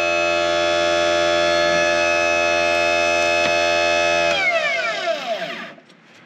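Electric motor of a benchtop tire truer spinning a foam RC tire, a steady hum with a whine above it. About four and a half seconds in it winds down, falling in pitch, until it stops.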